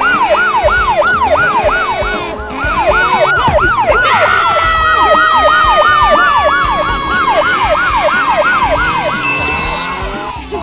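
Police siren sound effect in a fast yelp, about three falling sweeps a second. About four seconds in, a long steady siren tone joins it and slides slowly lower.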